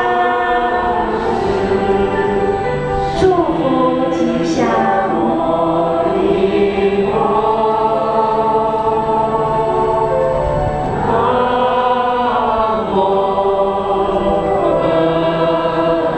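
A choir singing a Buddhist hymn in long, sustained notes that glide from pitch to pitch.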